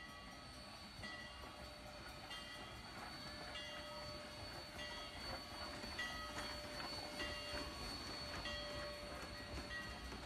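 Rio Grande No. 464 narrow-gauge steam locomotive and its wooden passenger coaches rolling slowly past with a low rumble. A grade-crossing bell dings about once a second throughout.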